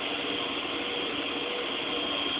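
Steady rushing noise of fire-hose streams and fire-ground machinery, with a faint steady hum running under it.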